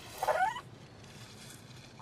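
A cartoon cat's short, frightened mew with a rising pitch, a little way in.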